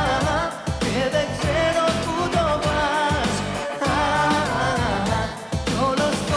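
Pop song with a male lead vocal singing over a backing track with a steady beat.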